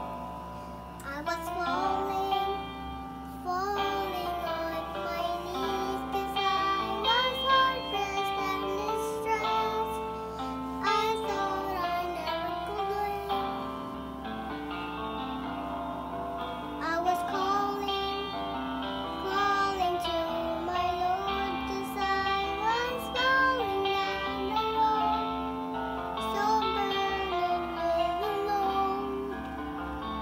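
A young girl singing a praise song solo over instrumental accompaniment. Her voice comes in about a second in and carries the melody.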